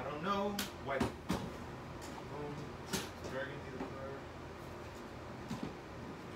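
A few sharp plastic clacks as acrylic paint bottles are handled and searched for in a plastic basket, four of them within the first three seconds, with a short hum or murmur of voice around them.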